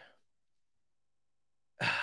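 Near silence, then near the end a man's short sigh lasting about half a second.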